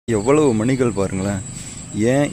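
A man's voice speaking for about a second and a half, then a short pause, over a steady high-pitched tone.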